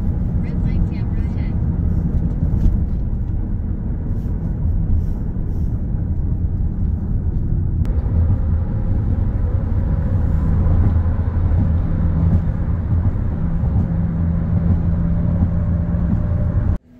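Steady low rumble of road vehicles and traffic. After a change about halfway through, a steady engine hum rides on top.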